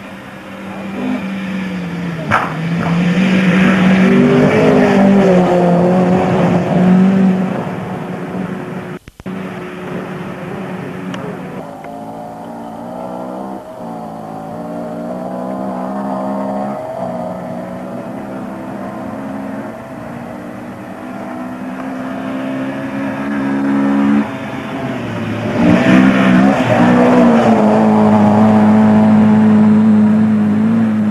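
Racing engine at high revs, rising in pitch and dropping back at gear changes, loudest twice as the vehicle comes past close by.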